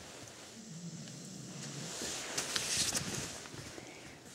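Small dog scuffling about on a bed blanket, the fabric rustling, with a few sharp clicks about two to three seconds in.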